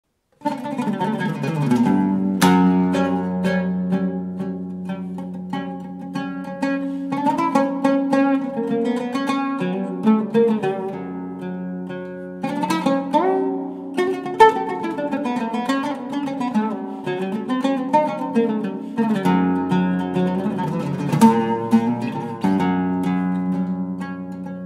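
Solo oud improvising a taqsim in maqam Hijaz: runs of plucked notes over a held low note, with some notes sliding in pitch. The playing starts about half a second in.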